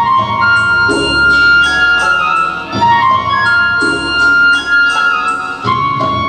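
Live band playing an instrumental introduction: a melody of long held notes with a flute-like sound, over keyboard chords and bass that are struck afresh about once a second.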